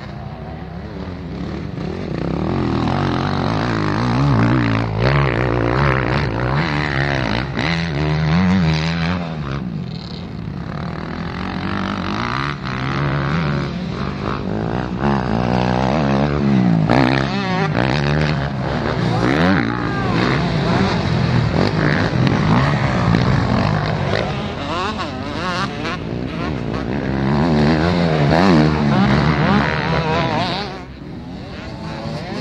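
Off-road dirt-bike engines racing on a cross-country track, revving up and dropping back again and again. At times more than one bike is heard at once.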